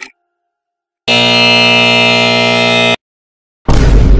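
Loud, steady electric buzzer sounding once for about two seconds, starting about a second in. About three and a half seconds in, a loud noisy burst begins.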